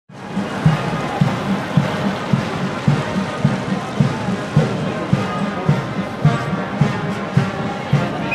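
Military brass band playing a march, brass over a bass drum beating steadily about twice a second.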